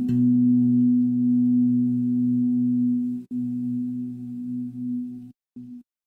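Meditation music: a sustained low drone of several steady tones, with a faint click at the start. It dips after about three seconds and breaks off about five seconds in, followed by a brief stutter.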